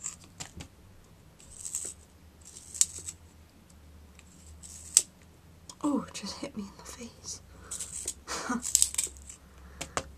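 Yellow wooden pencil being twisted in a small handheld pencil sharpener, the blade shaving the wood in short crisp scrapes at irregular intervals.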